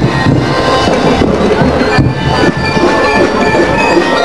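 Loud parade music: drum beats under sustained melodic notes.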